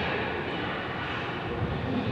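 Steady rushing background noise, like a fan running, under a push press set. A short low thud comes about a second and a half in, as the barbell is driven from the shoulders to overhead.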